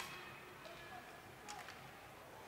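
Faint rink noise from an ice hockey game in play, with two short clicks of sticks and puck, about two-thirds of a second and a second and a half in.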